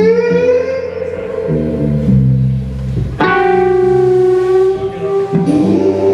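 A blues band playing live, with two long held lead notes over the band: the first bends up as it starts, the second comes in about three seconds later with a slight vibrato.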